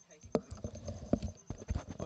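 A quick run of irregular knocks and clicks, the two loudest about a third of a second in and just past a second in.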